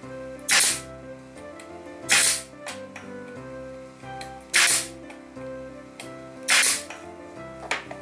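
Pneumatic nailer firing four nails into the wooden sled parts, about two seconds apart, each shot a short, sharp burst. Guitar music plays underneath.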